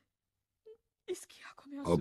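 A person crying: after near silence, a short faint sound and then tearful, breathy sobbing in the second second, running into speech at the end.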